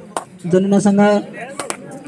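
A man's voice giving a short, held, chant-like call, with sharp slap-like clicks just before it and again about a second and a half in.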